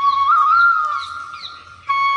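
Background music: a flute melody of long held notes with small ornamental turns, fading away near the end.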